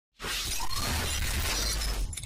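Cinematic logo-intro sound effect: a sudden crash-like burst, like shattering glass, that starts a moment in and sustains with a heavy deep rumble beneath it.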